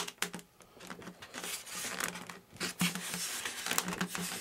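Hands handling and rubbing a styrofoam RC jet fuselage: scraping and crinkling with scattered clicks, busier in the second half, over a faint steady low hum.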